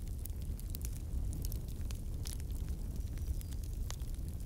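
Low, steady rumbling noise with scattered faint crackles and clicks, an added sound effect.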